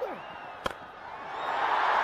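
A single sharp crack of a cricket bat striking the ball, then the stadium crowd's cheering swelling up over the last second as the ball flies toward the boundary.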